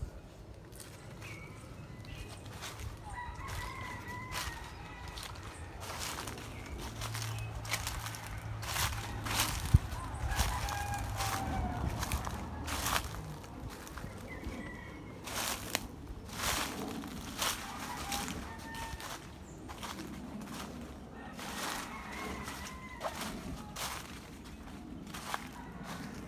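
A rooster crowing faintly several times, over crunching footsteps and rustling in dry leaf litter.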